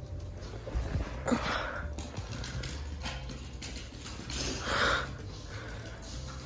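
Small terrier moving about during fetch: faint scattered tapping of its claws on the floor, and a short breathy huff about three-quarters of the way through from the dog, which is hoarse from barking.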